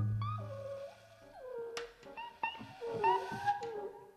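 Live progressive rock band playing a sparse passage: a low sustained bass note at the start, then a lead line with sliding, wavering pitch bends that come close to a cat's meow, over a few light percussion ticks.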